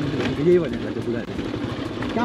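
Motorcycle engine running at low speed over a rough dirt track, with a voice singing a drawn-out, rising-and-falling note over it about half a second in.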